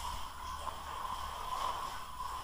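Steady low background noise, a faint hum with a hiss and a low rumble, and no distinct events: the microphone's room tone between spoken sentences.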